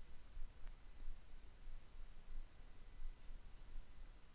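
Faint background noise of the recording room, with a low hum and a faint steady high tone; no distinct sound event.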